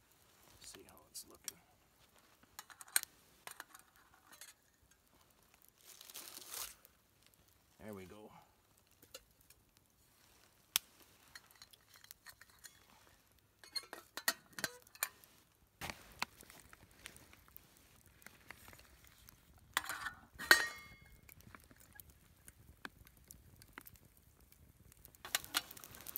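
Small campfire of sticks crackling with scattered light ticks and snaps, along with soft clinks and rustles as a metal cooking pot and its lid are handled. A brief louder sound comes about twenty seconds in.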